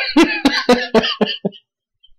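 A man laughing: a run of about eight short bursts, fading out after about a second and a half.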